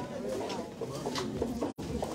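Low murmur of guests' voices in a banquet hall, with the sound briefly cutting out near the end.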